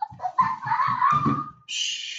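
A high-pitched, drawn-out vocal squeal that rises slightly over about a second, followed by a short hiss near the end.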